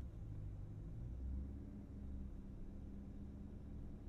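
Supercharged 6.2-litre V8 of a Cadillac Escalade V, heard from inside the cabin, running at low revs while the SUV creeps through a tight turn: a quiet, steady low hum.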